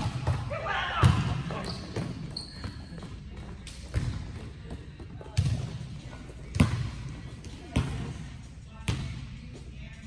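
A volleyball being struck and bouncing in a large gym, about seven sharp thuds a second or so apart that ring on in the hall. The loudest come about a second in and about two-thirds through. A short shout comes about a second in.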